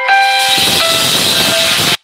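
A simple electronic melody of plain beeping tones with a loud, even hiss of static over it. Both cut off suddenly at the very end.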